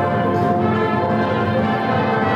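School symphonic band of brass, woodwinds and percussion playing at full volume, holding steady chords.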